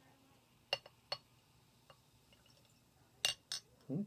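Soda poured from a glass bottle into a drinking glass, with sharp glass clinks a little under a second in, just after a second, and twice near the end as the bottle taps the glass.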